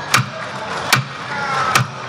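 Three strikes of the session gavel on the chair's desk, evenly spaced about 0.8 s apart: the formal knocks that close a parliamentary plenary session.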